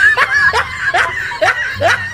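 A young woman laughing in a quick run of short, pitched bursts.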